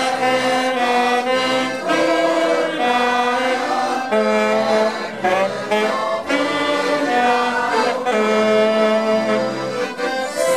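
Two accordions playing a Hungarian nóta tune with an amateur choir singing along, in held notes that change every half second or so.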